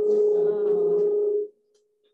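A loud, steady electronic tone that holds one pitch and cuts off about one and a half seconds in, with faint voices under it.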